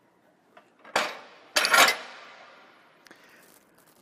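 Forklift LP tank swing-out bracket clanking back into position, with its propane cylinder on it. There is a sharp metal click about a second in, then a louder, longer metal clank half a second later that rings out briefly as the bracket locks in place.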